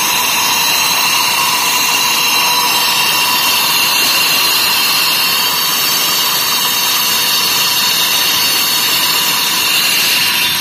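Large angle grinder with a cutting disc sawing through a concrete kerbstone: a loud, steady high-pitched whine over a rush of cutting noise, held without a break.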